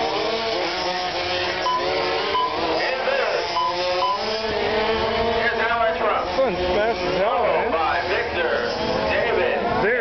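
Several radio-controlled Formula 1 model cars racing, their electric motors whining at overlapping pitches that rise and fall as they accelerate and brake through the corners.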